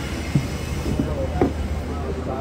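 Steady low rumble of a vehicle cabin, with brief, faint voices in the background.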